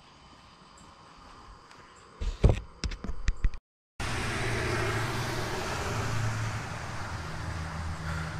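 A few loud thumps and sharp clicks from the microphone being handled, about two seconds in. After a brief dropout, steady traffic noise from a nearby busy road, with a low engine hum.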